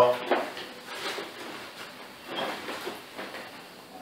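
Cardboard shipping box being opened by hand: a few short scraping rustles as the cardboard flaps are pulled back and the box is handled.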